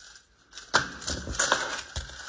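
Plastic nail-polish swatch sticks being handled, clicking and clattering against each other in a quick run of sharp clicks after a brief quiet start.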